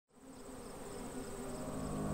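Honey bees buzzing around a flower, fading in from silence and growing louder, with a steady high-pitched insect trill underneath.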